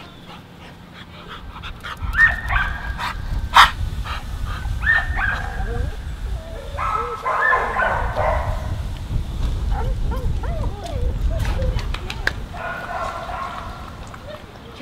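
A young Boxer mix dog whimpering and yipping in short high-pitched bursts, several times, over a low rumble.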